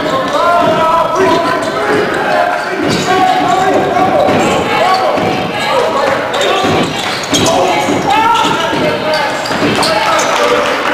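Basketball game sounds in a gym: a ball bouncing on the hardwood court among players' shouts and spectators' voices, echoing in the hall.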